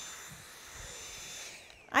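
Dyson V7 Motorhead cordless stick vacuum running on a shag rug on suction alone, its brush bar not spinning: a steady high whine over an airy hiss. About one and a half seconds in, the motor cuts off and its whine falls away.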